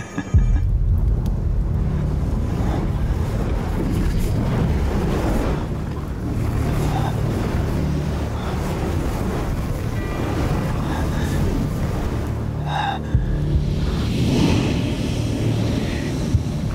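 Background film music over a heavy, steady low rumble of fantasy-battle sound effects, with one sharp hit near the end.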